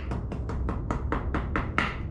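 Staff end knocked repeatedly against the floor, about five sharp knocks a second, driving a taped-up rubber leg tip fully onto the end of the staff.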